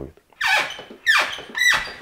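Three sharp, high squeaks in quick succession.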